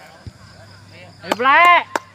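A loud shout from a person, about half a second long, rising and then falling in pitch, starting just past the middle. Sharp clicks come with it and just after it, and there is a soft thud just after the start.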